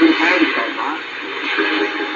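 Turkish-language Voice of Turkey shortwave AM broadcast on 5980 kHz, played through a Realistic DX-394 receiver's speaker: a voice talking continuously, thin and narrow in tone, over a steady hiss of shortwave noise.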